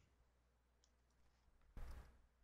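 Near silence, broken near the end by one sharp computer mouse click: a right-click that brings up the console's paste menu.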